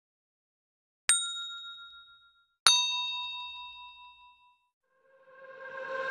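Two struck bell-like dings about a second and a half apart, each ringing out and fading; the second is lower in pitch. Near the end, music swells in.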